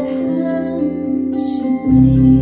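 Live band music: electric guitar and keyboard playing slow, held chords. A short hiss sounds about one and a half seconds in, and a deep low note comes in near the end.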